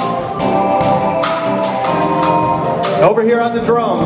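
Live gospel band vamping: held organ-style keyboard chords over bass and electric guitar, with regular tambourine and drum hits about two to three a second. About three seconds in, a man's voice starts speaking over the music through a microphone.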